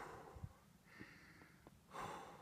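Faint, heavy breathing of a man winded from climbing a steep hill path, close to the microphone, with a breath about once a second. A few faint clicks sound between the breaths.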